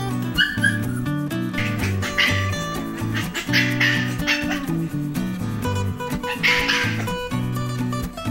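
A puppy gives a short high yip about half a second in, then barks three times over background music of strummed acoustic guitar.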